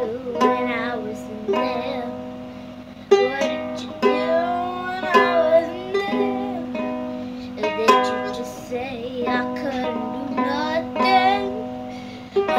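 A child strumming a small ukulele and singing along, improvising. Chords are struck every half second to a second, under a wavering sung melody.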